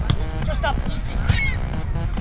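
A few short bird calls, about half a second in and again near a second and a half, over a steady low wind rumble on the microphone.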